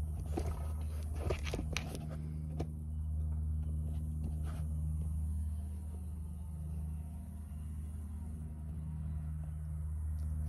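Knocks and scrapes from the phone camera being handled and set in place during the first couple of seconds, over a steady low rumble.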